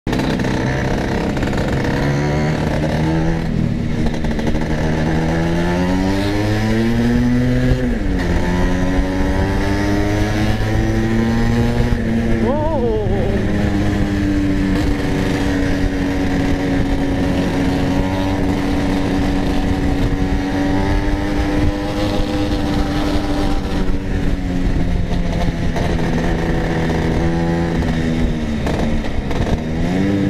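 Two-stroke Vespa scooter engine under way, its pitch climbing as it accelerates and dropping sharply at a gear change. There is a quick throttle blip, then it holds a steady cruising pitch until it eases off and picks up again near the end.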